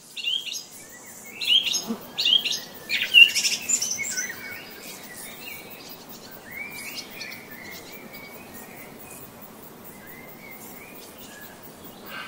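Small birds chirping, a busy burst of loud chirps in the first few seconds, then sparser, fainter calls over a steady background hiss.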